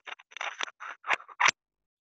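Computer keyboard and mouse clicks: a quick, uneven run of short sharp clicks over the first second and a half, then they stop.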